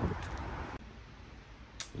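Background noise that drops to a quieter room tone just under a second in, with a single short click near the end.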